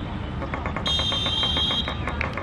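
Referee's pea whistle blown in one long blast of about a second, starting about a second in: the full-time whistle ending the match. A fast run of sharp clicks sounds under it.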